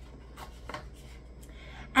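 Faint handling noise: a few light rubs and soft knocks as a round craft container is handled and set down on a table.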